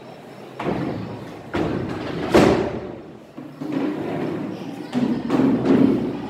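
White plastic chair being lifted, carried and set down, giving a series of thuds, knocks and scrapes. The loudest bump comes a little over two seconds in, with more scraping knocks near the end.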